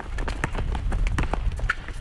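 Sneakers of several basketball players running on an asphalt court: a rapid, irregular patter of footfalls and scuffs.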